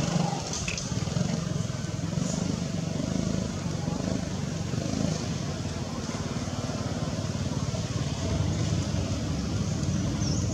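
A steady low motor hum, like a running engine, over constant outdoor background noise.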